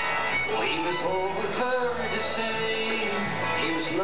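Bluegrass band playing live: fiddle, mandolin, two steel-string acoustic guitars and upright bass.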